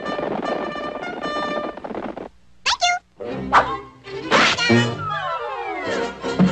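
Cartoon orchestral score with sound effects: a held chord, a brief pause, then a few sharp hits and a long falling glide near the end.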